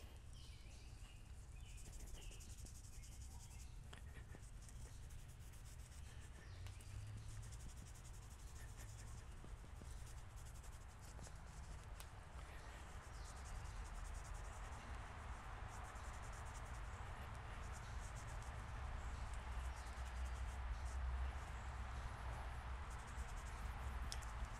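Microfiber cloth rubbing over a chrome golf iron's head and shaft, a soft, continuous rubbing that grows louder about halfway through, over a low steady hum. It is buffing off the last film of chrome polish.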